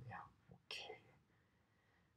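Near silence: the faint tail of a man's speech, a short faint breath or whispered sound just under a second in, then room tone.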